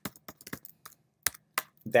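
Typing on a computer keyboard: a quick run of light key clicks, then a short pause and two louder keystrokes near the end.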